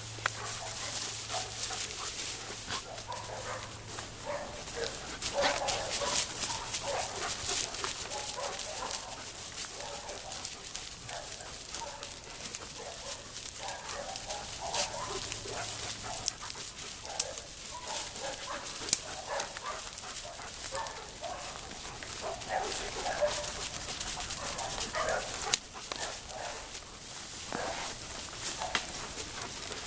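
A pack of German Shepherds moving through undergrowth, with dry brush and leaves crackling and rustling throughout. Scattered short vocal sounds from the dogs come and go.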